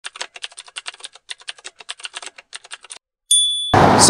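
Typing sound effect: rapid, irregular key clicks for about three seconds, then a single bell ding. A burst of noise comes in just before the end.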